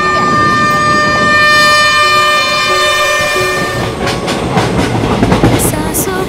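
Pakistan Railways diesel locomotive sounding its horn, a steady chord held for about four seconds, then the train rumbling past with its wheels clattering on the rails.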